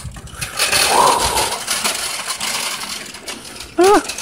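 Shopping cart pushed across rough asphalt, its wheels and wire basket rattling.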